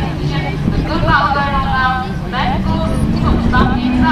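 Autograss race cars' engines running and revving as the pack races on a dirt track, with a steady low engine note that rises slightly near the end. Voices are heard over the engines.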